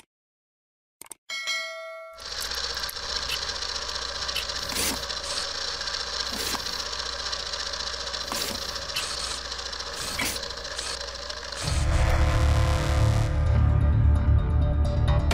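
A click and a short bell-like chime about a second in, then intro-sequence sound design: a dense, steady hissing texture with sharp hits every second or so, giving way near the end to a louder deep bass rumble.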